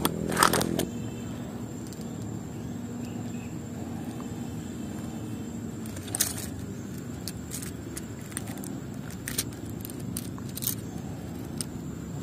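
Hands handling a freshly caught grouper and a small minnow lure with treble hooks: scattered short clicks, scrapes and rattles, the loudest about half a second in, over a steady low background noise.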